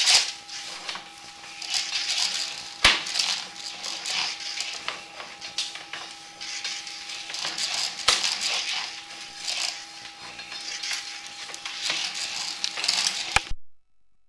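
Sewer inspection camera's push cable being pulled back out of the drain line and coiled into its reel: irregular rattling and scraping in uneven surges, with sharp clicks about three seconds in and about eight seconds in. A steady faint whine runs underneath, and the sound cuts off abruptly near the end.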